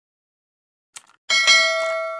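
Sound effects of a subscribe-button animation: a short mouse-click sound about a second in, then a bright bell chime that rings on and slowly fades.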